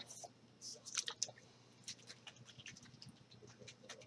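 Faint, scattered clicks and taps of small plastic colour-mist spray bottles being handled, a few of them louder about a second in.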